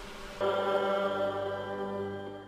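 Church organ holding a sustained chord that comes in about half a second in, in a large reverberant cathedral.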